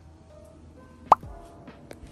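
Soft background music with one loud, short 'plop' sound effect just after a second in, a quick upward-gliding bloop like a water-drop pop.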